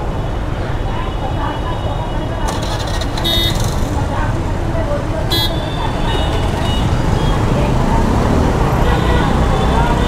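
City street traffic at a junction: motorbike and scooter engines running, with short horn toots about three seconds in and again a little after five seconds.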